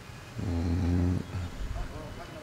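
A man's low voice holding one steady note for under a second, starting about half a second in, much quieter than the recitation around it.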